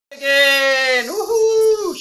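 A man's voice in a long wordless call: one held note for about a second, then a jump to a higher held note that falls away at the end.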